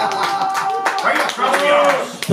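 Small audience clapping, with voices and laughter over the applause.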